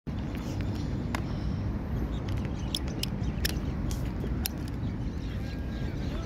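Steady low rumble of outdoor city background noise, with a few scattered light clicks.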